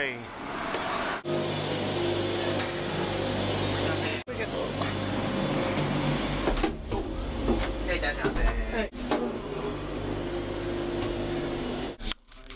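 Nunobiki ropeway gondola and its station machinery running with a steady low hum, broken by abrupt cuts between short clips. People's voices are heard briefly past the middle.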